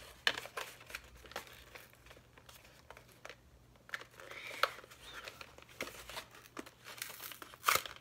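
Highlighter packaging being pried and crinkled by hand to work a highlighter out, with scattered crackles and clicks and one sharp crack near the end.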